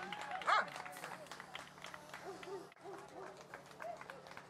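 People calling out to a German Shepherd gaiting on a lead, to keep the dog moving and alert. There is a short rising call about half a second in, then fainter calls.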